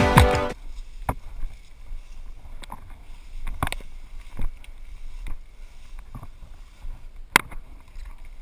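Music cuts off about half a second in. Then footsteps and rustling through tall grass and brush, with sharp knocks of gear about once a second as the player walks.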